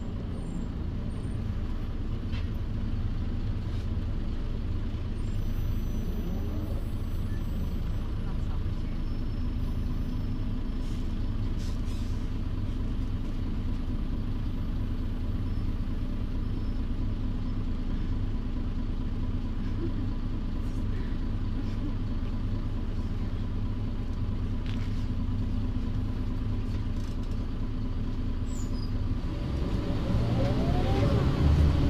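Mercedes-Benz O405 city bus's OM447h horizontal six-cylinder diesel idling steadily while the bus stands still, heard from inside the passenger cabin.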